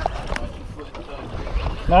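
Wind buffeting the microphone over open water, with two sharp clicks in the first half second.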